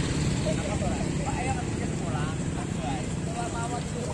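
Many motorcycle engines running together in a steady low rumble, with several people's voices talking over it.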